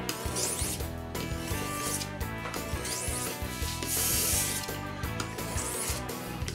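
Steel knife blade rubbed in circles on a wet whetstone dressed with fine abrasive sand, a gritty scraping in repeated strokes. This is the finishing honing of the edge, with the slurry of sand and worn-off metal building on the stone.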